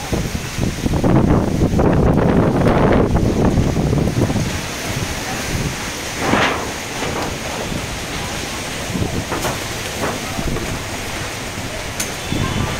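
Strong gusty storm wind buffeting the microphone, heaviest through the first five seconds, then easing, with a brief swell about six and a half seconds in.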